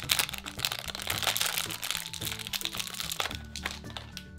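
Crinkling and crackling of a plastic-foil blind bag being opened by hand, easing off about three seconds in, over soft background music.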